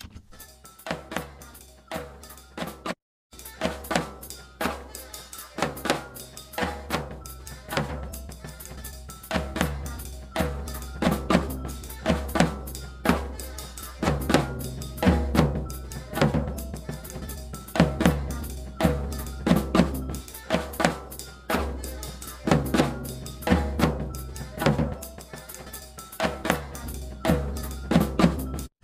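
A recorded floor tom, its hits repeating in a loop, playing through a Warm Audio WA273-EQ (a two-channel Neve 1073-style preamp and EQ) while its gain and EQ are adjusted. The tom goes from thin and brittle to full-sounding as the deep low end builds up, with a brief break in the loop about three seconds in.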